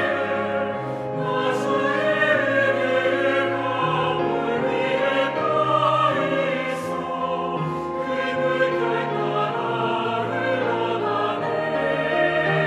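Mixed church choir singing a Korean sacred anthem in sustained, flowing phrases, with accompaniment underneath.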